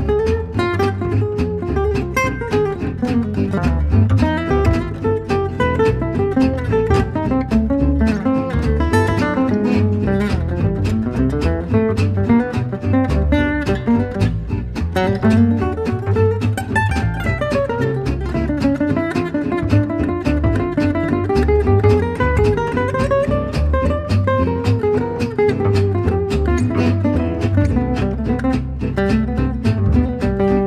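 Instrumental jazz: an acoustic guitar plays a fast melodic line that climbs and falls, over a bass keeping a steady pulse.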